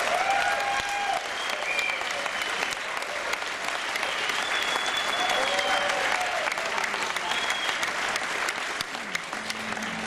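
Audience applauding, with a few cheering voices rising over the clapping.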